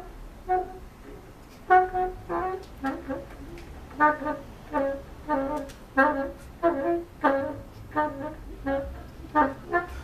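Bassoon played in short, detached notes in a free improvisation, sparse at first and then coming about two to three a second from about four seconds in.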